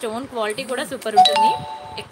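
A woman talking, then about a second in a single bell-like chime: a sharp ding whose several steady tones ring on to near the end.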